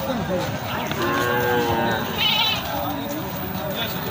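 Goat bleating in two calls, a held one about a second in and a short wavering one just after, with people's voices around it.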